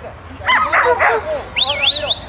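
German Shepherd Dogs barking and yelping in a quick cluster, then a high wavering whistle-like tone that rises and falls twice near the end.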